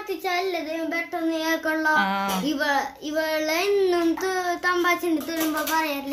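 A child singing in a high voice, holding one note after another with small slides in pitch and a short break about three seconds in.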